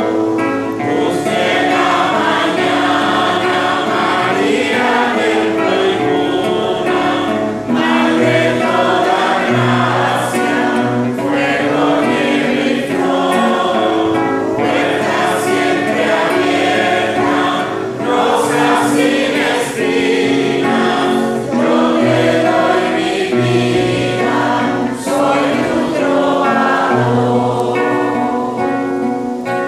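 A congregation sings a hymn to the Virgin Mary together, continuously and loudly, over an instrumental accompaniment with steady low notes.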